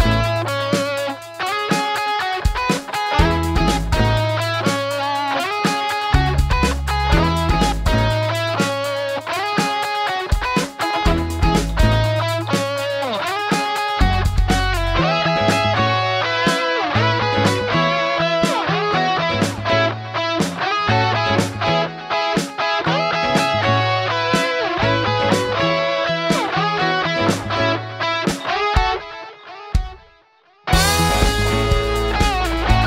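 Instrumental multitrack cover played on two layered electric guitars, melody notes over a steady beat and a pulsing low bass line.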